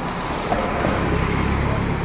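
A van driving past on the bridge roadway: a steady low engine and tyre rumble.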